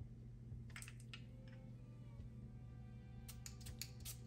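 Small perfume atomizer spraying onto the skin, a couple of short soft hisses about a second in, over a faint steady room hum. Near the end comes a quick run of small clicks as the bottle and cap are handled.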